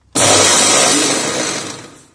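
Havells Maxx Grind mixer grinder switched on in a short burst, its motor and steel jar running loud for about a second and a half, then dying away near the end as it is switched off.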